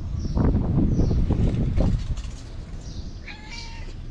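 A cat meows once, briefly, near the end. Low rumbling noise comes before it, during the first couple of seconds.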